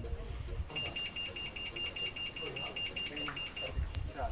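Wall-mounted electric gate bell sounding as a rapid pulsing beep, about seven beeps a second, for about three seconds, starting just under a second in.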